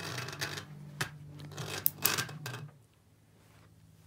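Steel-core crossover inductors buzzing and rattling as crosstalk from the neighbouring coil magnetizes them: a steady low hum with scattered sharp clicks, the hum dying away about two and a half seconds in.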